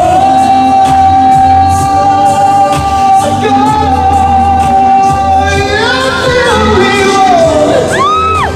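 A male pop singer holds one long high note for about seven seconds over the live band's backing music. The note bends down and ends near the end.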